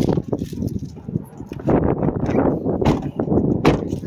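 Rustling of a phone being handled and shuffling steps as a person climbs out of a car and walks along it, with a sharp thump near the end.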